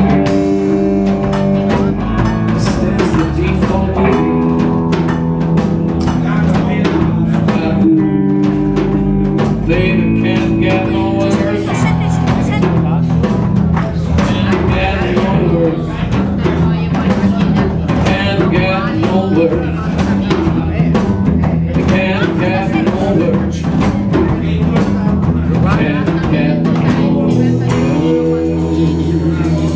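Live blues band playing an instrumental passage without vocals: electric guitar lines with bent notes over electric bass and a drum kit keeping a steady beat.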